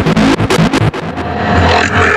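Hardstyle electronic dance track. It opens with rapid synth stabs, then from about a second in a rising synth sweep plays over a held bass note, building up before the drop.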